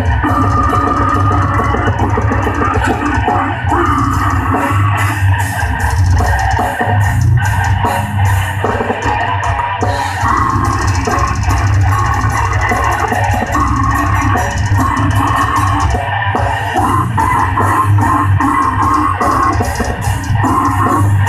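Heavy metal band playing loudly through a PA, with distorted electric guitar, bass and drums, continuous throughout; the sound changes character about halfway through.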